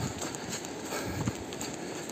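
Footsteps on a wet, leaf-covered dirt trail, a few soft irregular steps over a steady hiss.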